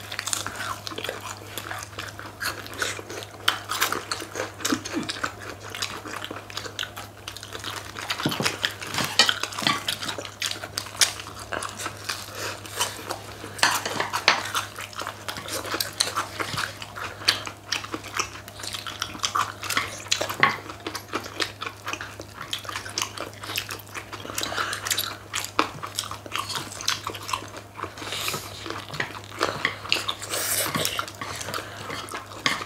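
People biting into and chewing crispy fried chicken wings with a thin starch-batter crust: a dense, irregular run of crunches and wet mouth sounds, with occasional clicks of chopsticks.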